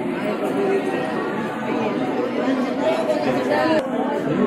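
Crowd chatter: many people talking at once, a steady, dense hubbub of overlapping voices.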